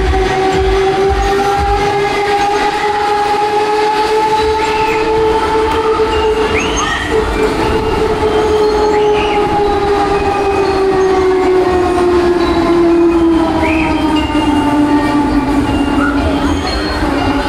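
Mondorf Break Dance fairground ride running at speed, its drive giving one loud, sustained, horn-like whine that rises slowly in pitch and then sinks as the ride's speed changes. A few short high chirps sound over it.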